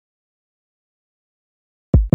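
Dead silence, then right at the end a single deep drum thump, the first beat of a drum-machine music track.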